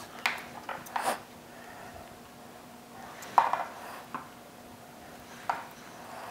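Small plastic food-colouring dropper bottles handled and set down on a tabletop: a few light clicks and taps, the sharpest about three and a half seconds in.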